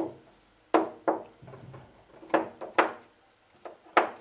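Round plastic magnetic counters clicking onto a metal chalkboard as they are set down one after another: a series of short, sharp clicks at irregular intervals.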